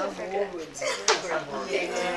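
Several people talking at once at a low level, room chatter, with a short sharp click about a second in.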